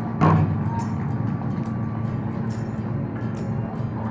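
Large taut strings on a hands-on exhibit pulled back and let go, giving one sudden low twang about a quarter-second in. A steady low hum carries on beneath it.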